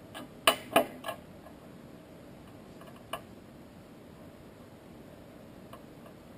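Sharp clicks of an opened iPhone 4S and small hand tools against a glass tabletop during a battery replacement: three in quick succession in the first second, one more a little after three seconds, and a faint tick near the end.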